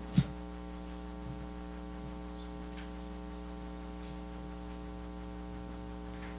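Steady electrical mains hum picked up by the meeting room's podium microphone system, with one brief low thump just after the start.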